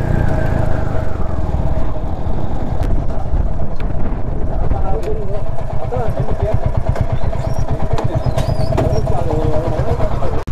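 Royal Enfield Hunter 350's single-cylinder engine dropping in pitch as the bike slows to a stop, then idling with a steady low thump.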